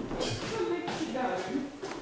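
Quiet, indistinct speech with a few brief rustles.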